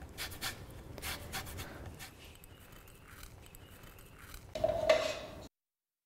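Microplane grater zesting an orange: a run of quick rasping strokes, then quieter handling. About four and a half seconds in comes a louder clink with a brief ring, as of metal against a bowl, and the sound cuts out suddenly just before the end.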